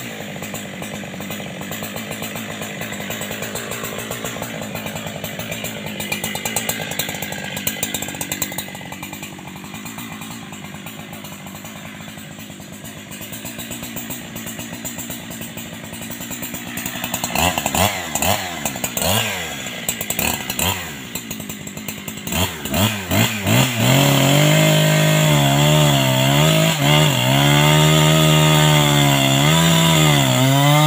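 A two-stroke chainsaw idles steadily, then is blipped up and down in a series of short revs. From about three-quarters of the way in it is held at high revs, loud, with its pitch dipping and recovering.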